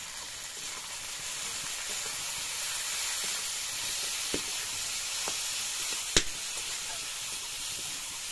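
Sliced onions sizzling steadily in hot oil in a metal wok as they are stirred with a spatula, with a few faint clicks and one sharp knock about six seconds in.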